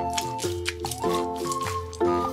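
Children's background music playing over a few short squelches from a mesh squishy stress ball being squeezed in the hand.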